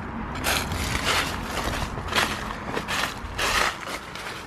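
Footsteps crunching on dry leaves, about five steps at a walking pace.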